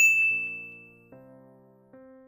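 Subscribe-button bell sound effect: a single bright ding at the start that rings out and fades within about a second. Soft electric-piano chords play beneath it and change every second or so.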